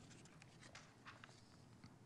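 Near silence: quiet room tone with a few faint light ticks.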